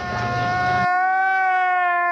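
A boy's singing voice over low backing sound, which cuts off just under a second in. A man's long, high wailing cry then takes over, held almost on one pitch; it is a comic meme sound effect.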